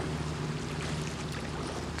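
Steady outdoor background ambience of the river course: an even hiss with a low, constant hum and no distinct events.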